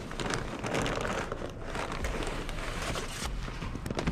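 Paper takeout bag rustling and crinkling in a hand, with irregular crackly rustles throughout.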